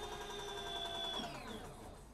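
Electric motorcycle's rear hub motor whining steadily as the lifted rear wheel spins, then the whine falls in pitch and fades about a second and a half in as regenerative braking slows the wheel.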